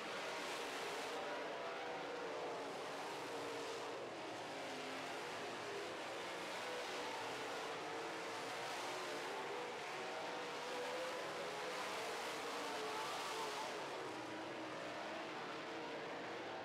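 Several dirt modified race cars running on the track, their engines rising and falling in pitch as they rev through the laps, over a steady wash of engine noise.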